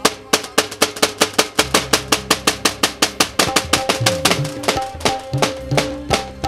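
Live Pashto folk-music interlude without singing: tabla played in fast, steady strokes, about four a second, over held melodic notes. In the second half the low drum's notes bend in pitch.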